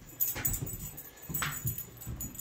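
A small dog, one of the Yorkshire terriers, whimpering faintly, with a few soft knocks.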